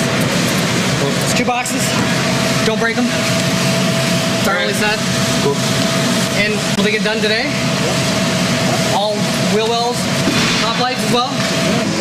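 Short, indistinct snatches of people talking, every second or two, over a steady low hum and a faint constant tone.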